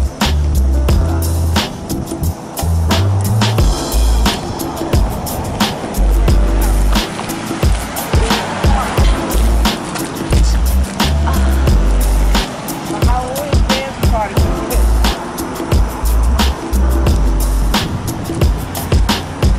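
Wind buffeting the camera microphone in irregular low gusts, with frequent sharp clicks and knocks from the camera being carried at a walk.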